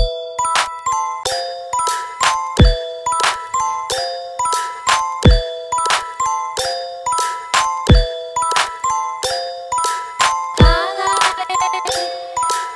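Bass house instrumental beat: a repeating melody of short high synth notes over sharp percussion hits, with a deep falling bass hit about every two and a half seconds. A wavering synth layer joins about a second and a half before the end.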